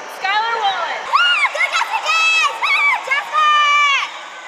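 Young woman's voice squealing: a short spoken phrase, then a series of very high-pitched shrieks from about a second in, ending in one long held squeal that cuts off at the end.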